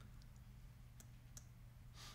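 Near silence: steady low room hum, with two faint sharp clicks about a second in.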